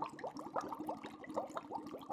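Bubbling liquid sound effect: a steady stream of quick, short rising blips, many each second.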